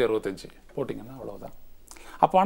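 A man speaking in short phrases with pauses between them.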